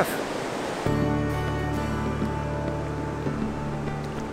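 Fast-flowing river water rushing over a weir, a steady hiss; about a second in, background music with sustained low held notes comes in over the water.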